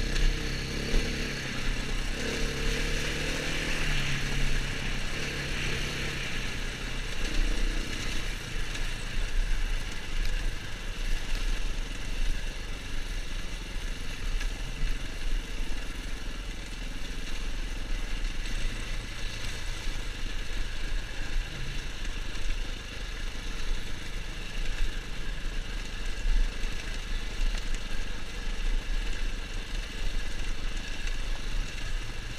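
Off-road motorcycle engine running at low revs as the bike picks its way along a rough lane, the throttle opening and easing off. The engine note is strongest for the first several seconds, then settles lower under a steady haze of wind and rumble on the helmet microphone.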